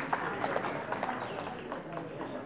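Footsteps of shoes on a concrete floor, a few light irregular steps, over low background chatter of voices.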